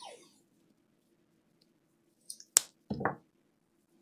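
Adhesive tape handled at the bench: a sharp click about two and a half seconds in, then a brief rip as a strip is pulled and torn from the roll, over a faint steady hum.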